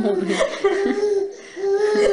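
A baby's high-pitched cooing and laughing: two drawn-out vocal sounds with a short pause between them, about a second and a half in.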